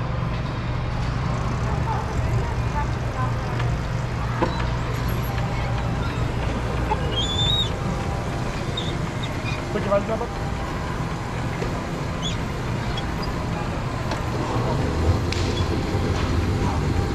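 Go-kart pulling out of the pit lane onto an indoor track: a steady low hum throughout, with a few faint high squeaks and indistinct voices in the background.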